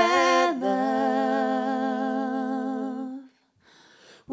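Voices singing unaccompanied, without guitar or violin: a short note gliding down into one long held note with a slight vibrato, which cuts off about three seconds in, followed by a brief silence.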